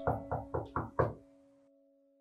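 Five quick knocks, like knocking on a door, in about the first second, over held background music tones that then fade away.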